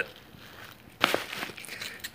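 A hook-and-loop patch being repositioned on a bag's loop panel, with a short crackle that starts suddenly about a second in.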